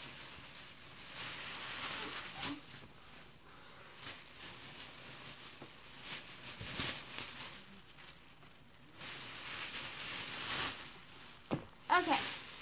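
Thin plastic shopping bag crinkling and rustling in several bursts as it is handled and clothing is pulled out of it.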